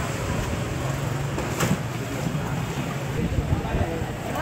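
Street ambience: a steady low hum with faint background chatter of several people, and one sharp click about a second and a half in.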